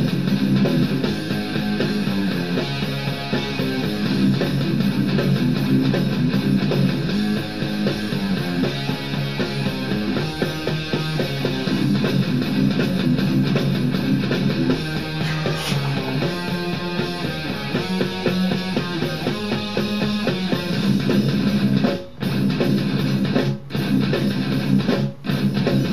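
Rock music, electric guitar and drums, in an instrumental passage without singing. The sound drops out briefly twice near the end.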